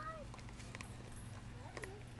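A young child's high-pitched voice exclaiming at the start and again near the end, with a few light taps in between over a steady low hum.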